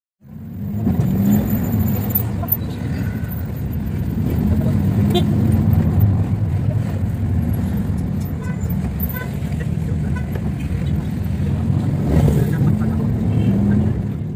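Street traffic: motor vehicle engines running as a steady low rumble.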